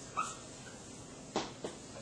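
Dry-erase marker writing on a whiteboard: a short squeak of the felt tip just after the start, then two quick sharp tip strokes a little past halfway.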